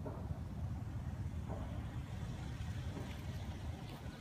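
Outdoor ambience: a low, uneven rumble throughout, with a faint click near the end.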